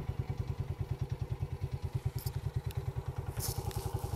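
Honda 125 motorcycle's single-cylinder engine idling, a steady, rapid even putter.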